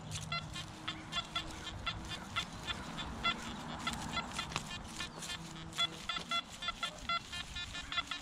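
Nokta Anfibio metal detector sounding off as the coil is swept over the ground: many short, pitched chirping beeps, several a second and irregular in rhythm, as it responds to targets, over a low steady hum.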